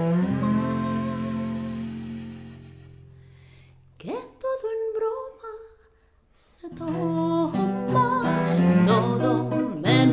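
Small acoustic band with classical guitar: a held chord rings and fades away over about four seconds, a short wordless sung phrase follows, then a brief near-silent pause before guitar and voice start up again for the last few seconds.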